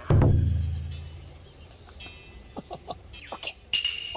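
A single deep struck ring, like a gong or bell, that starts suddenly and dies away over about a second and a half. A few faint short sounds follow, with a brief sharp one near the end.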